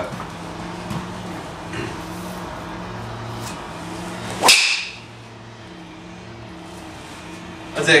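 Nike SQ Mach Speed driver swung and striking a golf ball about four and a half seconds in: a rising swish into a sharp crack at impact with a brief ringing tail. A steady low hum sits underneath.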